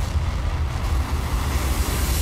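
Deep, steady rumble of a volcanic eruption sound effect, with a hissing roar of noise swelling toward the end.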